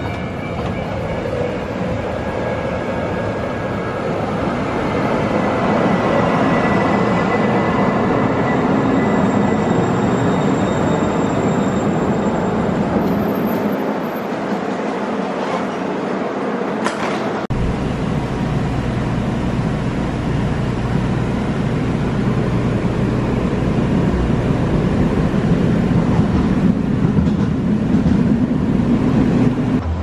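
MAX light-rail train pulling into the platform and running past: a steady rolling rumble with faint thin tones above it. About two-thirds of the way in, the sound changes suddenly to a heavier, deeper rumble.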